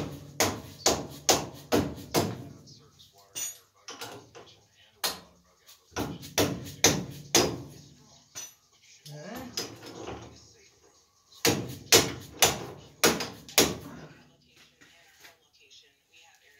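Metal being struck repeatedly with a hammer, about two blows a second in three runs, while working on a truck's rear leaf-spring shackles.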